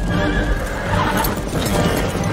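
Film soundtrack of a mounted group of horses riding, hooves clattering and a horse whinnying, under dramatic film music.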